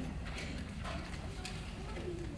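A few faint clicks and light taps over the low hum of a hall: handling noise as a microphone is settled in its stand and the program pages are picked up.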